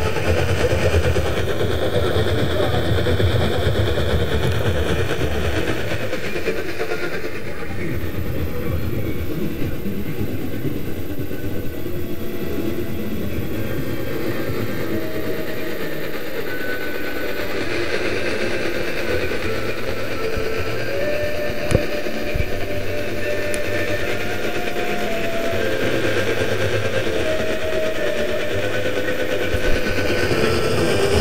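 AM radio static from a GE Superadio tuned to 1700 kHz, a steady rushing, crackling noise with the weak long-distance station barely coming through. A few short steady tones sound in the second half, and there is one sharp click about two-thirds through.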